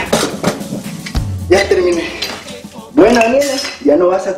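Metal tools clinking and clattering as a handyman works on the drain pipes under a kitchen sink, over background music. A voice comes in near the end.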